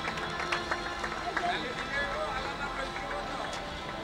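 People's voices talking, with music playing in the background.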